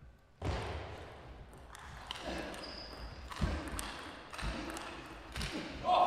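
Knocks of a table tennis ball, roughly one a second, over hall ambience with faint murmur from the spectators.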